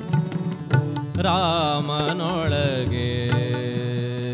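Devotional bhajan music: a harmonium sustains its reedy chords and melody while tabla strokes and the bright strikes of small taal hand cymbals keep the beat. A wavering, ornamented melodic phrase rises and falls in the middle.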